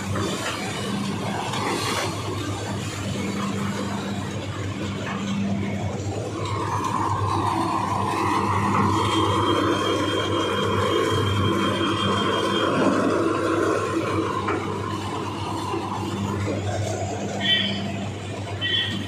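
Steady hum of sugar-mill machinery and idling tractor engines at the cane carrier, with people's voices over it; the din grows louder for several seconds in the middle.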